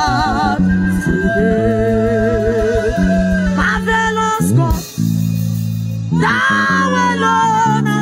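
Live gospel worship music: a woman singing with a wide vibrato into a microphone, backed by a live band with electric guitar, keyboards, bass and drums keeping a steady beat.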